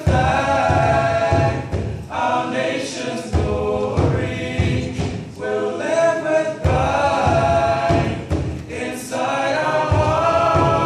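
A seven-voice vocal septet singing a cappella in harmony, in phrases with short breaks between them.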